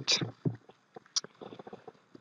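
A man's voice trailing off at the end of a sentence, then near quiet with a few faint, short clicks and small noises.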